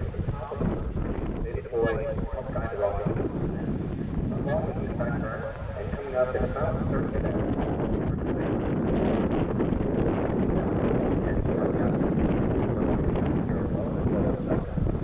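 Indistinct background talking from people nearby, with wind noise on the microphone; the talk thickens into a steadier murmur about halfway through.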